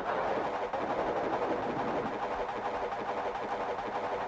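Ambient electronic music with no drums at this point: a steady, noisy synthesizer wash with faint held tones underneath.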